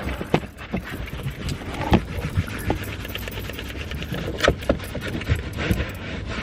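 A car dust mop rubbing and brushing over a plastic dashboard close to the microphone, with scattered knocks and taps as it moves.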